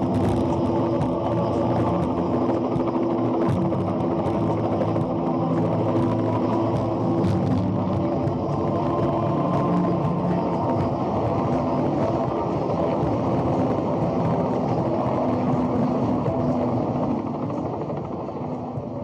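Film soundtrack heard through a room microphone: steady music with long held tones over the continuous drone of a small propeller plane's engine.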